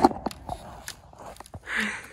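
Scattered small knocks and rustles of a child crawling across a rope cargo net, with a short hiss-like noise near the end.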